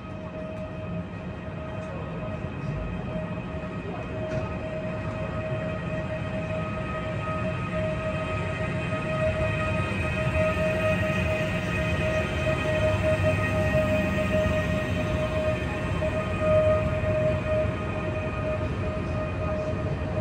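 Talgo-built Afrosiyob electric high-speed train pulling in along the platform: a low rumble with a steady whine, growing steadily louder as it draws near.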